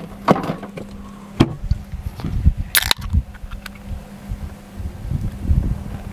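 A few clicks and knocks of items being handled, then a soda can snapped open with a short, sharp hiss near the middle.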